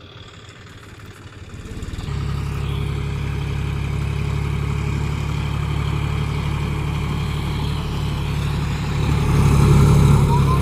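A John Deere tractor's diesel engine running with a steady low rumble. The rumble comes in about two seconds in and grows louder near the end.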